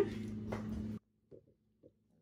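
Steady low background hum that cuts off suddenly about a second in. Near silence follows, with two faint clicks of a metal spoon against the aluminium pot.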